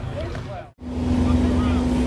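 Background voices, then a sudden cut about a second in to a vehicle engine idling steadily: a constant low rumble with one steady hum above it.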